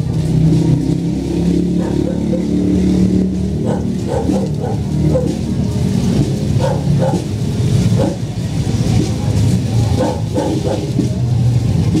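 A motor vehicle engine running steadily at low speed, with scattered voices from a crowd walking close by.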